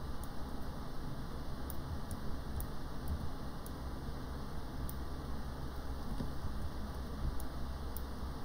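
Quiet room tone with a steady low hum and a handful of faint, sparse computer mouse clicks.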